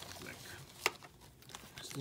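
Faint crinkling of a black plastic Mystery Minis blind bag being handled in the hands, with one sharp click a little under a second in.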